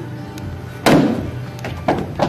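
Background music playing, with one loud sharp thump about a second in that rings out briefly, and a lighter knock near the end: impacts from the ball game in the hallway.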